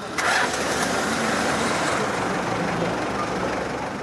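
A motor vehicle's engine running close by amid street traffic noise, coming in suddenly just after the start and holding steady.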